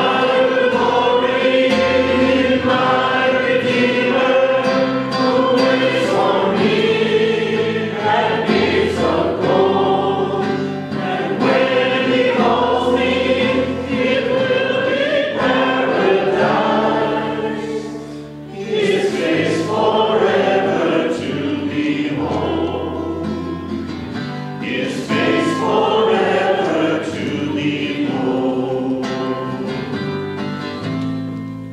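A church congregation singing a hymn together, accompanied by acoustic guitar, with a brief break between lines about 18 seconds in.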